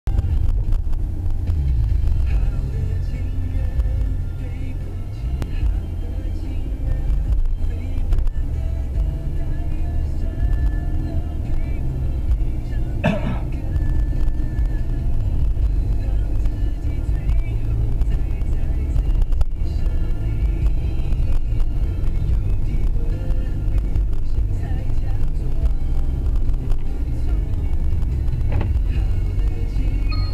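Inside a Mercedes-Benz car's cabin while driving: steady engine and road rumble with a radio playing music and talk. A single short knock is heard about halfway through.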